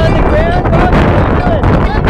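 Wind buffeting the microphone with a steady low rumble, and excited voices exclaiming over it in short rising and falling calls.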